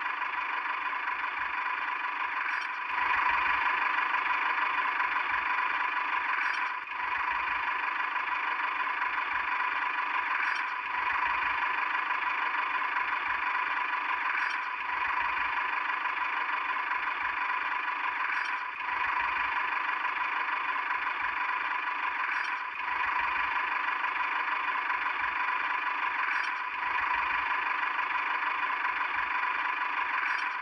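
Steady engine-like running sound with no deep bass. It repeats in an identical loop about every four seconds, each repeat marked by a short dip and a faint tick.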